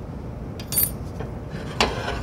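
A few light scrapes and sharp metallic clicks: a utility knife blade scraping screw tear-out off an MDF board, then the metal miter gauge clinking against the table saw's steel top near the end.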